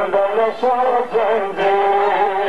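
A male voice singing a noha, a Shia mourning lament, in short phrases of long, wavering held notes.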